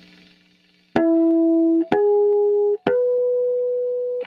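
Electric guitar sounding three natural harmonics of the low E string one after another, harmonics 4, 5 and 6 (E, G sharp, B), which together make a major chord. Each note starts with a sharp pick attack and rings clear for just under a second, each one higher than the last, beginning about a second in.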